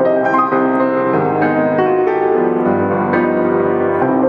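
Solo grand piano playing a slow, flowing melody, with notes struck several times a second over held low notes.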